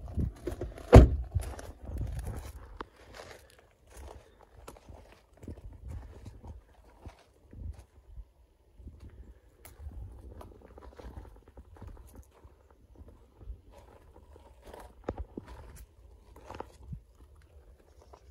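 A car's rear passenger door is shut with a single loud thud about a second in, followed by footsteps crunching irregularly on gravel.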